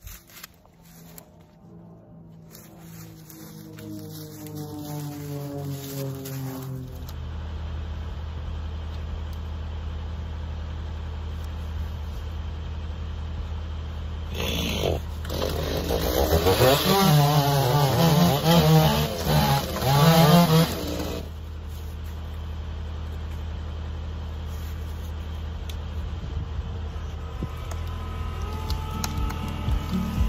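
Background music throughout, and about halfway through a gasoline chainsaw runs and cuts into a fallen tulip tree log for about six seconds, its pitch wavering under load.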